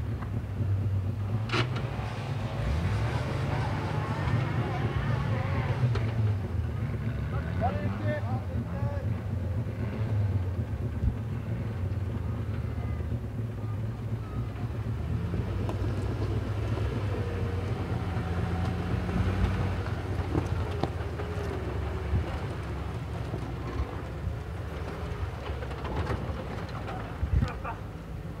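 Land Rover Defender 90's engine working at low speed as it crawls up a steep dirt slope, its revs rising and easing off several times.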